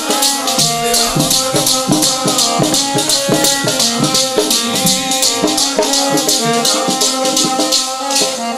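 Instrumental kirtan accompaniment with no singing: held chords, drum strokes and a bright, even rattle of jingles at about five strokes a second.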